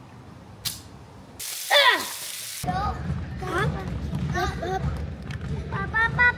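A cork pops from a sparkling wine bottle, followed about a second later by a loud hiss that ends abruptly and a voice crying out, falling in pitch. Then children's voices and chatter echo in a school gym.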